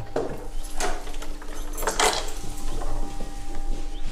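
A house's wooden front door opening, with a few footsteps about a second apart as people step in, over a low steady hum.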